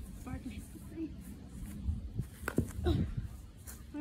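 An Easton 360 youth baseball bat striking a baseball once, a short knock about two and a half seconds in; it is a poor hit, not squarely on the barrel.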